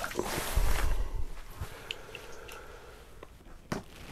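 A person shifting on a seat: about a second of clothing rustle with a low thump, then a few faint light clicks and ticks.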